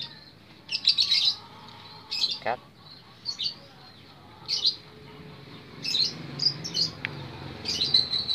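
Small birds chirping: short high-pitched chirps, about one a second.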